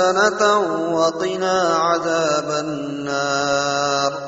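A melodic, chanted recitation of an Arabic supplication (dua) by a solo voice, with ornamented pitch turns, over a steady low drone. Near the end it settles into a long held note.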